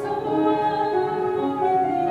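Voices singing a slow song in harmony, holding long notes that step from pitch to pitch.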